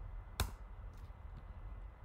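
Computer keyboard keystrokes while typing code: one sharp key click about half a second in, then a few faint ticks.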